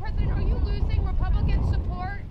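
Several people talking indistinctly outdoors, over a steady low rumble.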